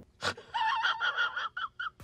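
A sharp gasp, then a high-pitched, wheezy giggle held on one note that breaks into short bursts near the end.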